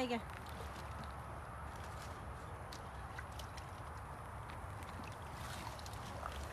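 Water lightly sloshing and dripping as long water lily stems are pulled up out of a pond by hand beside a small boat, with faint scattered ticks over a steady low background noise.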